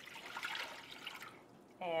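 Water pouring from a glass measuring jug into a stainless steel saucepan, a splashing stream that fades and stops about a second and a half in.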